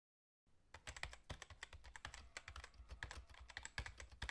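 Rapid typing on a computer keyboard: a fast, uneven run of key clicks that starts about half a second in.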